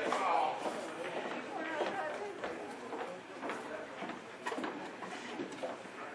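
Audience chatter in a hall between songs, with a few scattered claps as the applause dies away.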